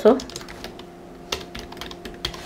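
Typing on a computer keyboard: a run of light key clicks, with one sharper click about two-thirds of the way through, over a faint steady hum.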